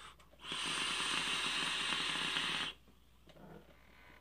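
A long draw on a sub-ohm vape atomizer fired by a Revenant Vapes Cartel 160W box mod. Air hisses steadily through the tank's airflow while the coil crackles for about two seconds, then the draw cuts off sharply and a faint exhale follows.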